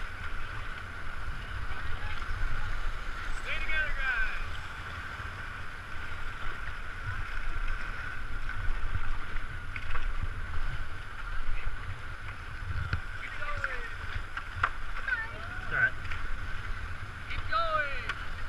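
Fast, high river water rushing past a whitewater raft: a steady low rumble and hiss. Faint calls from people rise and fall a few times, the last near the end.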